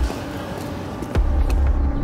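City street traffic rumble, swelling louder a little past halfway, with a steady tone underneath.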